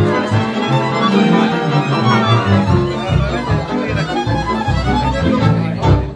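Hungarian Romani band music: violins lead over cimbalom and double bass, playing fast and dense over a pulsing bass line. The piece stops at the very end.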